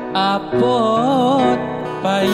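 Sholawat devotional music: a wavering, ornamented melody over steady sustained accompaniment.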